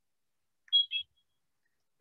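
Two short, high-pitched electronic beeps in quick succession about three-quarters of a second in, otherwise silence.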